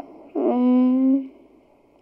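A young girl's voice through a microphone, holding one steady hum-like vowel at an even pitch for about a second before stopping.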